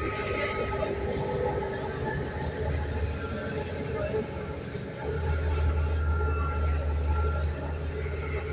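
Passenger train running, heard from inside the carriage: the steady rolling rumble of wheels on rails, with a faint thin whine, and the low rumble growing heavier about five seconds in.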